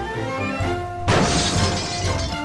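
A sudden crash about a second in, lasting under a second, as the Lionel HO exploding boxcar bursts apart and its plastic sides and roof fly off, heard over orchestral background music with brass.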